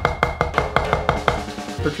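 Drumsticks playing fast, even strokes on a drum practice pad, about seven a second, stopping about a second and a half in. The strokes are driven by pulling the fingers rather than moving the wrist.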